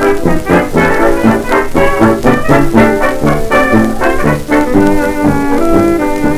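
1920s dance orchestra playing an instrumental passage on a 78 rpm record, with brass carrying the tune over a steady dance beat.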